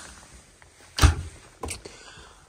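Small galley fridge door pushed shut: a single sharp thump about a second in, followed by a fainter knock.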